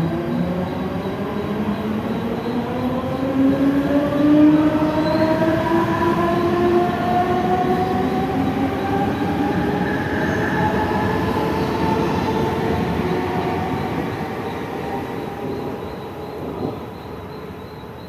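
Central Railway EMU suburban train accelerating out of the station: its electric traction motors whine in several tones that climb steadily in pitch over the rumble of wheels on rail. The sound fades away over the last few seconds as the train leaves.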